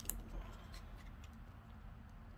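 Trading cards being slid and turned over in the hand: a couple of faint clicks near the start and soft card rustle, over a steady low hum.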